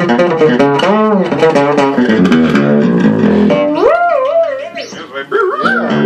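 Fretless electric bass played in quick runs of notes that slide between pitches, then about halfway through a high note held with wide vibrato.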